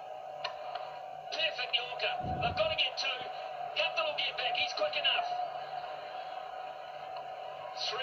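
Cricket broadcast sound played through a television speaker and picked up across the room: voices in short spells, thin with little bass, over a steady hum and a steady whine. A dull low thump about two seconds in.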